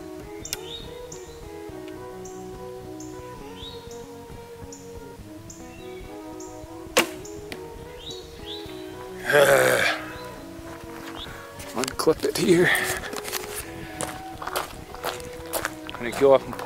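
Background music with a steady beat. About seven seconds in, one sharp snap of a traditional bow shooting an arrow. A short loud burst of voice follows, and near the end a run of clicks and rustling from the camera being handled.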